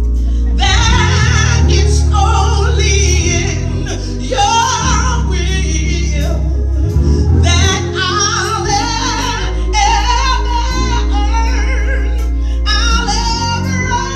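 A woman singing gospel solo into a microphone, her voice wavering and sliding between notes in long held lines. Beneath her runs accompaniment whose low notes are held and change every couple of seconds.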